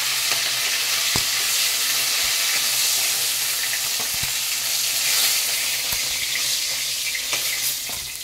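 Hilsa fish heads sizzling steadily as they fry in hot oil in a metal kadai, with a few sharp clicks of a metal spatula against the pan as the heads are turned and lifted out.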